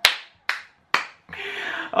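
A man clapping his hands overhead: three loud claps about half a second apart, followed by a breathy exhale.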